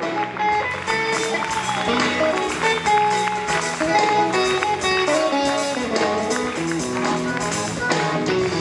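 Electric guitar solo played live: a run of single melodic notes over the band's drums and bass.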